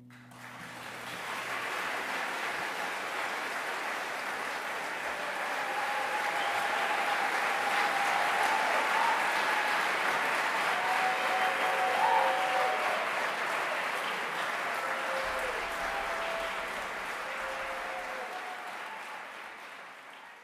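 Theater audience applauding after a song with string quartet, building to a peak about halfway through and thinning near the end, with a few voices calling out over it. A low sustained string note fades away in the first couple of seconds.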